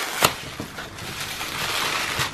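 Thin clear plastic packaging crinkling as it is pulled off a book by hand, with one sharp crackle just after the start and then a softer steady rustle.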